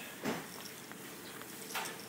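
Two brief knocks over a faint steady background. The first, about a quarter second in, is lower and louder; the second, near the end, is sharper.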